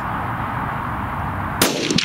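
A single rifle shot from a Sako TRG bolt-action rifle in .308, a sharp crack about one and a half seconds in, over a steady background hiss.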